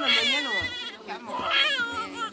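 A young child crying in high-pitched wails that rise and fall, loudest at the start and again about one and a half seconds in.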